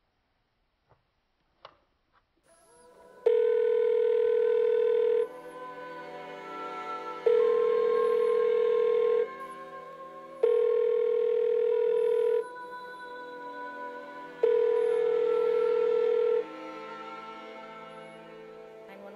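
Landline telephone tone from a corded phone whose handset is off the hook: four loud, steady tones of about two seconds each, roughly two seconds apart, starting about three seconds in. Sustained background music runs underneath.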